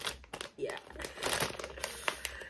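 Thin plastic packaging of a makeup brush crinkling as it is handled, in short, irregular rustles.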